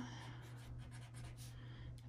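Pen writing on paper: a run of faint, short strokes as a word is written.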